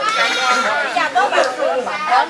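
High-pitched women's voices calling out and chattering over one another, in no clear words.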